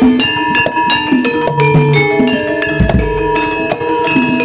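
Live gamelan music for a jaranan dance: bronze metallophones and gongs ringing in a quick repeating pattern over regular drum strokes, with one deep drum stroke about three seconds in.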